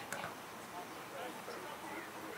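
Distant voices of people calling out across an outdoor soccer field, faint and indistinct, with one short sharp knock just after the start.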